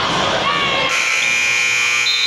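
Crowd noise and shouting in a gym, then, about a second in, a basketball scoreboard buzzer sounds a loud, steady electronic tone that keeps on.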